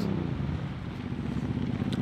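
Truck engines running as a convoy of box trucks rolls slowly past: a steady low drone.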